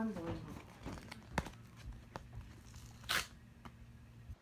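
Paper envelope being handled and torn open: scattered paper rustles and clicks, with a short tearing rip about three seconds in.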